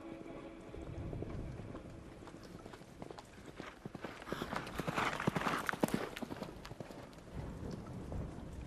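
A quick, irregular run of sharp clicks and taps, building up about three seconds in, loudest in the middle and thinning out near the end.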